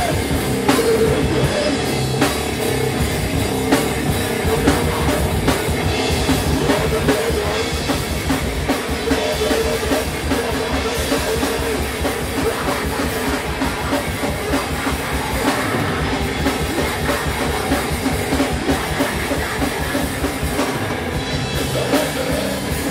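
A rock band playing loud and live, driven by fast drumming on a drum kit under bass and electric guitar, with no break.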